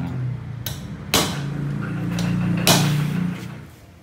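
Three sharp hammer blows on metal, the last two loudest, over a steady low hum that fades away near the end.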